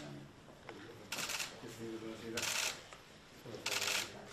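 Camera shutters firing in quick bursts of rapid clicks, three bursts about a second and a quarter apart, each lasting about a third of a second.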